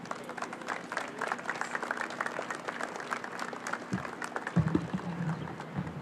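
Audience applauding, many hands clapping at once. A few low thumps come through between about four and six seconds in.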